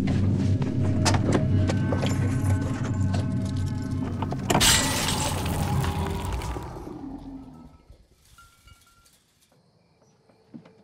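Tense horror film score with steady low notes and rapid sharp hits, broken by one loud crash about four and a half seconds in, then fading away to near silence around eight seconds in.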